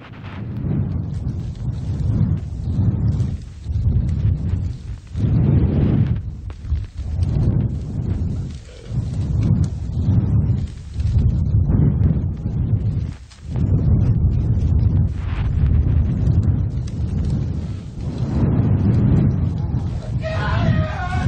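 Played-back recording presented as audio of a fatal bear attack: loud, distorted low rumbling that surges and dips every second or so, with a dip about thirteen seconds in.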